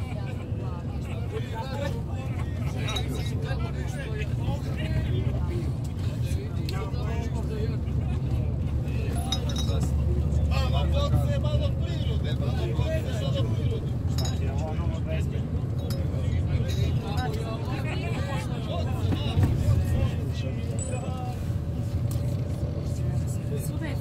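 Steady low rumble inside a moving passenger vehicle's cabin, with people talking in the background.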